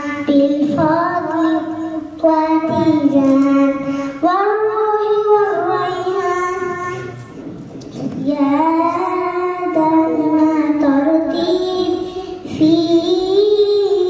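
A young girl chanting Quranic recitation into a microphone, in long held, melodic phrases with ornamented glides and short pauses for breath between them.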